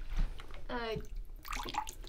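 Water being poured from a bottle into a metal goblet: a thin trickle that begins about one and a half seconds in.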